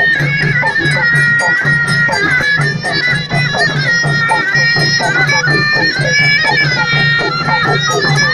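Moroccan folk music: hand-held frame drums beaten in a quick, steady rhythm under a loud, reedy wind instrument holding a long, wavering melody line that climbs briefly about three-quarters of the way through.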